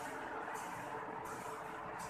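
Steady background noise, with two brief soft rustles close to the microphone.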